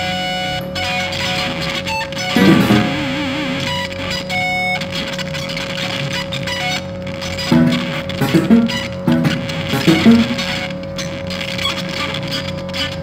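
Free-improvised experimental music: electric guitar through effects plays sparse plucked notes over a steady electronic drone tone. About two and a half seconds in, a note wavers up and down in pitch, and short plucked notes cluster near the end, with scattered clicks.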